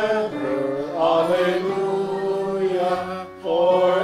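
Congregation singing a slow liturgical response in long held notes over a sustained instrumental accompaniment. The phrase breaks off briefly a little after three seconds in, then starts again.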